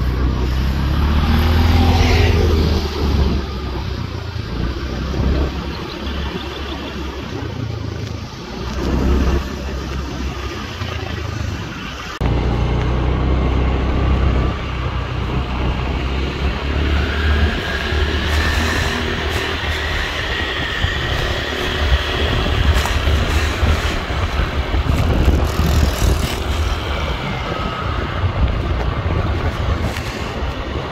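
Wind rumbling on the microphone with engine and road noise from a motor scooter riding at speed. The level jumps abruptly about twelve seconds in.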